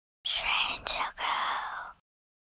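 A person whispering a short phrase in about three breathy syllables, starting a quarter second in and stopping just before the end.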